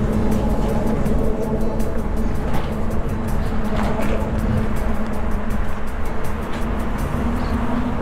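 Steady low rumble of road traffic and wind on the microphone, with a faint hum of held tones that may be background music.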